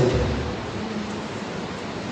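A pause in a man's speech at a podium in a large hall: steady hiss and room noise, with the trailing end of his last word just at the start.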